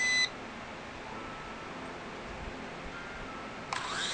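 A short electronic beep from the L701 toy drone after it is switched on, followed by quiet. Near the end the drone's small electric motors start up, spinning its propellers with a steady high whine.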